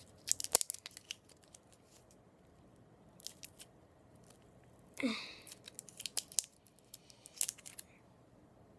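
A small candy wrapper being torn and crinkled open by hand, in several short bursts of sharp crackles with pauses between. A brief vocal sound about five seconds in.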